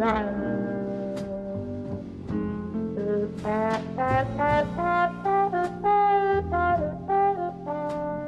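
Trombone played with a plunger mute in a jazz solo: a note sliding down at the start, then a phrase climbing in pitch, then a run of short, separated notes. Low bass notes and a few sharp cymbal-like strikes sit underneath.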